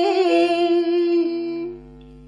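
Unaccompanied female Quan họ folk singing: one long note held steady on a vowel, tapering off and fading out near the end.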